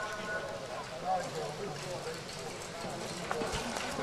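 Hoofbeats of a trotting harness horse drawing a sulky over grass, with faint voices in the background.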